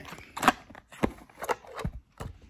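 Shipping packaging being cut and torn open by hand: an irregular run of sharp crackles and rips, the loudest about half a second in.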